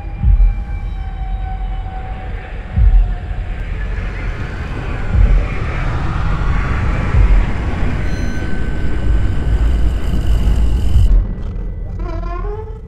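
Horror-trailer sound design: a low rumbling drone struck by deep thuds every two to three seconds, under a swelling rush of noise that cuts off suddenly about eleven seconds in.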